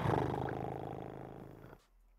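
A long, deep belch from a man who has just shotgunned a beer. It starts loud and fades steadily over nearly two seconds.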